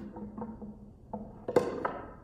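A gold-painted box being handled and stood upright on the floor: a few light taps, then two sharper knocks about a second and a half in, the first the loudest.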